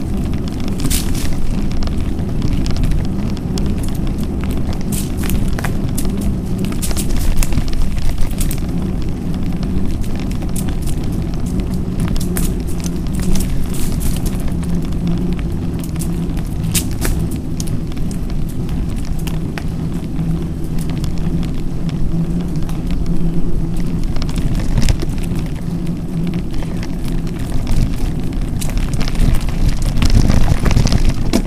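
Mountain bike riding over a rough dirt-and-gravel trail: a loud, steady low rumble of tyres and the shaking camera mount, with many small clicks and rattles from the bike and loose stones.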